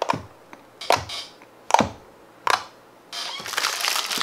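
Fingers poking into glossy green PVA-glue slime set with liquid detergent: four short, wet pops a little under a second apart. Near the end a dense crinkling starts and grows louder.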